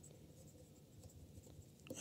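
Faint scratching of a stylus writing on a tablet, just above near silence.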